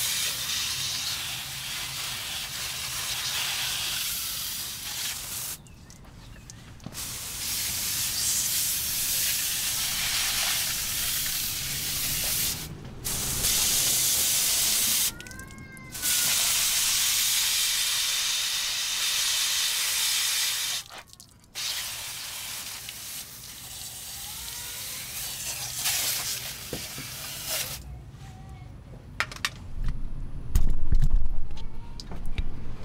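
Water from a garden hose spray nozzle hissing as it rinses caked mud off a truck's door jamb and sill, with several brief breaks in the spray.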